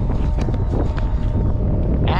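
Wind buffeting the camera's microphone, a steady low rumble, with a few faint clicks.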